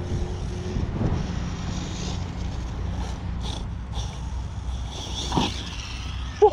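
Steady low rumble of wind on the microphone outdoors, with a few faint short whirring noises from a distant radio-controlled buggy's electric motor.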